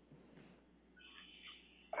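Near silence: faint room tone during a pause, with a brief faint high-pitched sound about a second in.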